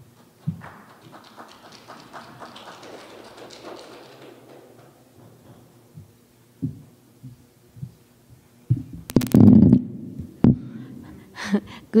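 Soft thumps and a loud low rumbling thud picked up by a lectern microphone as it is handled and adjusted, loudest about nine seconds in, after a few seconds of faint room noise. A woman's voice starts at the very end.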